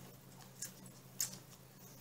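A small folded slip of paper being unfolded by hand: faint crinkling with a couple of short ticks, the sharpest about a second in.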